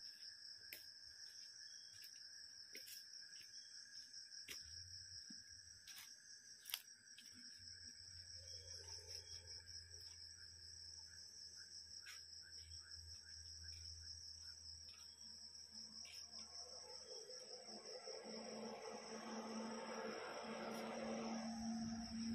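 Insects chirring in a steady high pulsing trill, faint throughout, with scattered light ticks; a broader, louder sound swells in over the last few seconds.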